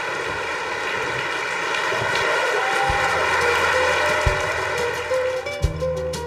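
A large audience applauding, getting louder as the performers come on stage, over steady music. Near the end the applause eases and the music comes through more clearly, with distinct notes and a bass line.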